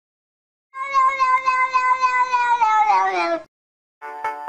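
A cat's single long meow, starting under a second in, held at one pitch for about two seconds and then sliding down in pitch before it stops.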